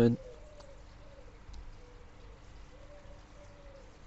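A pigeon cooing softly, a few low coos behind a quiet outdoor background.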